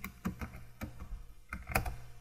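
Computer keyboard keys clicking as a short command is typed, about a dozen irregular keystrokes with a small cluster near the end.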